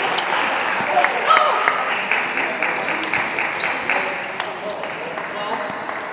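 Table tennis rally: the ball clicks sharply off the bats and the table, with a player's shout about a second in, then scattered applause from the hall.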